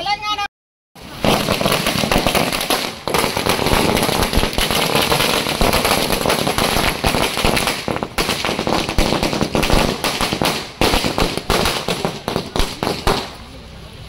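A long string of firecrackers going off, starting about a second in as a dense, continuous run of sharp cracks and bangs that dies away shortly before the end.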